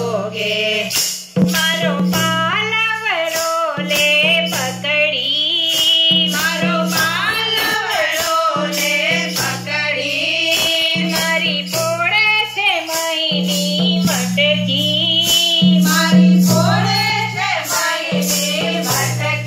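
Group of women singing a Gujarati Krishna bhajan, with steady rhythmic hand clapping over a low held accompaniment tone.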